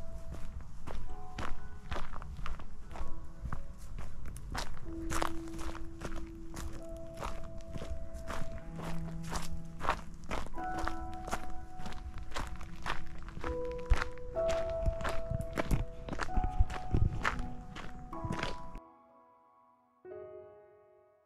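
Footsteps on a gravel path at a steady walking pace, about two steps a second, over soft background music with long held notes. The footsteps and outdoor noise cut off suddenly near the end, leaving only the music.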